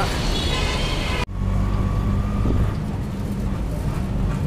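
Street traffic noise that breaks off abruptly about a second in, replaced by the steady low rumble of an auto-rickshaw's engine heard from inside its cabin.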